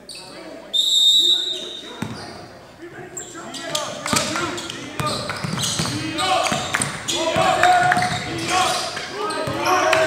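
A referee's whistle blows one steady high note for about a second near the start. Then a basketball is dribbled on a hardwood gym floor, with sharp echoing bounces under players and spectators shouting.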